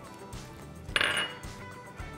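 A small ceramic bowl clinks briefly against a plate or counter about a second in, as one bowl is set down and another picked up, over faint background music.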